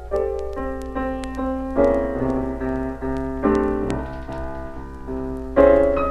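Two pianists playing a blues four-hands at one piano, a run of chords and single notes, played from a 1946 78 rpm shellac record with light surface clicks and a steady low hum underneath.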